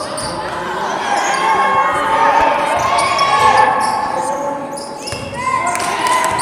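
A basketball being dribbled on a hardwood gym court during play, with players' voices calling in the background, echoing in a large hall.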